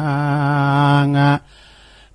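A monk's voice chanting a Buddhist sermon in Northern Thai verse, drawing out one long low note with a slight waver that breaks off about a second and a half in.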